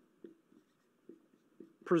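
A marker writing on a whiteboard: a few faint, short strokes as letters are written. Near the end a man starts speaking.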